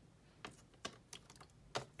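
A few faint, light clicks and taps, about four in two seconds, from handmade cardstock tags being handled and set down on the work surface.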